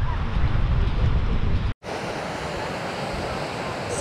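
Wind rumbling on the microphone over the wash of surf on a sandy beach. About two seconds in, the sound cuts out for an instant and gives way to a steadier wash of breaking waves.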